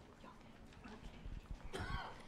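Faint room noise, then a few soft low thumps and a brief rustle near the end from a handheld microphone being handled at a lectern.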